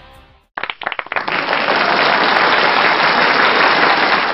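Guitar music fades out in the first half second, then audience applause starts suddenly, scattered claps at first filling into steady applause.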